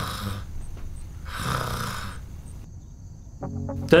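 A man snoring: a snore that ends about half a second in, then a second long, rasping snore a second later. Plucked guitar music starts near the end.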